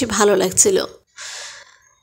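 A person's voice speaking, cutting off just before a second in, followed by a short breathy rush of noise lasting about half a second.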